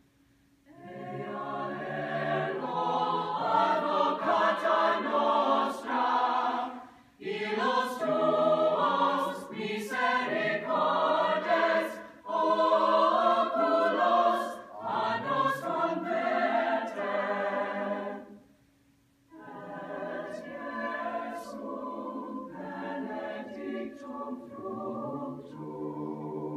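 Mixed choir of men and women singing unaccompanied, in phrases broken by short pauses, the longest about two-thirds of the way through.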